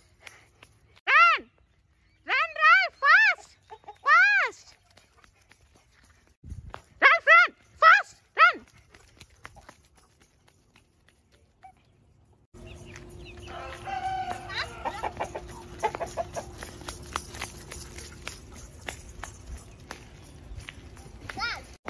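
Chickens clucking: a series of loud, short, arched calls through the first half, stopping about eight and a half seconds in. After that, a quieter outdoor background with light clicks and a faint steady hum.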